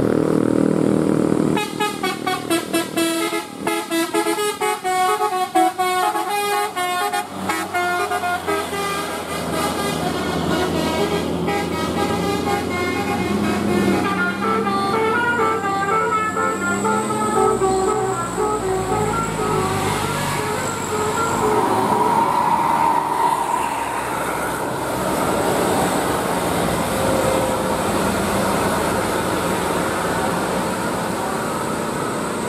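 Bus telolet horn, a multi-tone air horn, playing a quick tune of short stepping notes for about twelve seconds, followed by the bus engine and passing traffic with another horn tone a little past the middle.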